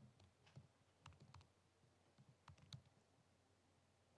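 Faint keystrokes on a laptop keyboard, a few scattered clicks as an IP address is typed into a terminal and entered.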